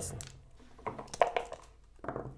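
Backgammon pieces clicking: checkers set down on the board and dice rattled in a dice cup, a quick run of sharp clicks around the middle.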